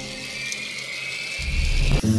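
Whine of a battery-powered Tomy Plarail toy train's small electric motor running along plastic track, a thin high tone that rises slowly in pitch. A low rumble joins about three-quarters of the way through.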